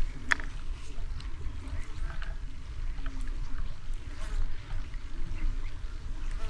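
Faint clicks and scrapes of a small blade trimming a boilie and tiger-nut hookbait to shape, over a low steady rumble.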